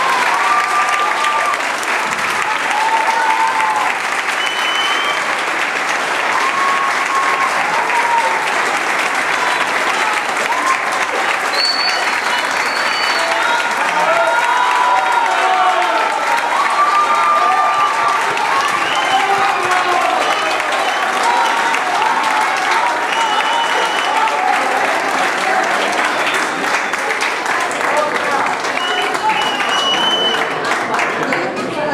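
Audience applauding steadily and loudly, with voices calling out among the clapping.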